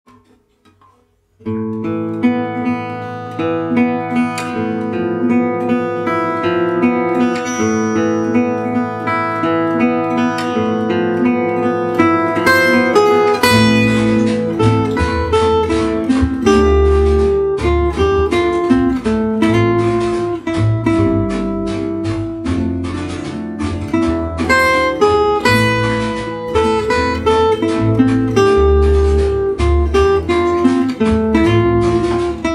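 Gypsy jazz acoustic guitar playing an arpeggiated A minor intro that starts after a second or two of quiet, then a picked melody over A minor, D minor and E7 chords. About 13 seconds in, a fuller accompaniment with bass notes and a steady rhythm joins.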